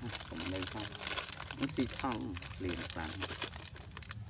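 Crinkly plastic snack bag rustling and crackling as it is handled, with a voice sounding over it.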